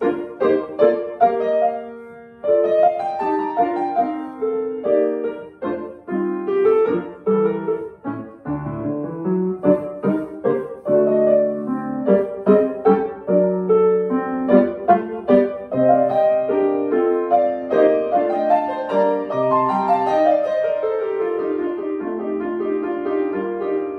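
Solo Yamaha grand piano playing a minuet. The notes begin out of silence right at the start, the sound thins briefly about two seconds in, and then the playing runs on continuously.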